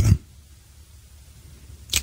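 A man's voice ends a word, then a pause of faint steady hiss and low hum. Just before he speaks again there is a short, sharp intake of breath.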